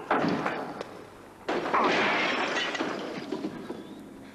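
Two crashes with shattering glass. The first comes right at the start and dies away within about a second; a louder one follows about a second and a half in and trails off over about two seconds.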